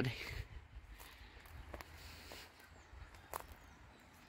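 Faint footsteps walking on tiled paving, irregular soft steps with a couple of sharper clicks, about halfway through and near the end.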